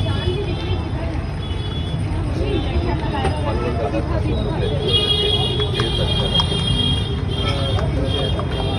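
Street traffic with a steady low rumble, background voices, and horns sounding on and off, most strongly about five to seven seconds in.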